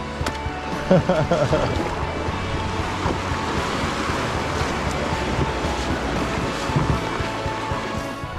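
Whitewater rapids rushing and splashing around a canoe as it runs through, a steady wash of water noise. A short voice is heard about a second in, with background music underneath.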